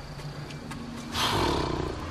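King cobra hissing: one loud, breathy hiss that starts about a second in and lasts most of a second, from a snake held pinned just behind the head.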